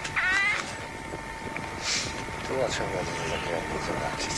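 Indistinct voices of people talking, too faint and broken to make out, over a steady faint high-pitched tone.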